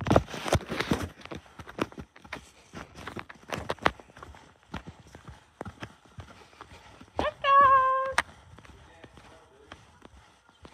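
Footsteps on a concrete path, irregular light knocks and scuffs as someone walks. About seven seconds in, a single held vocal note at one steady pitch sounds for about a second, the loudest thing here.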